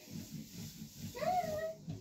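A domestic cat meows once, a short call that rises in pitch and then holds, about a second in.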